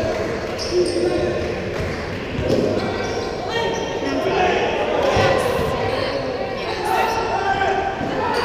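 A basketball being dribbled and bounced on the court during live play, under voices of players and spectators calling out, all echoing in a large gym.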